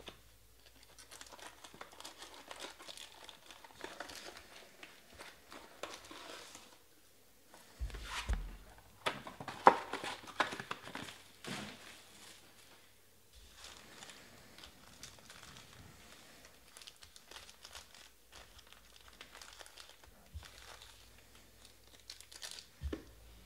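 Foil trading-card packs crinkling and rustling as hands handle and spread them out of a hobby box, in irregular bursts that are busiest about eight to twelve seconds in, with one dull bump among them.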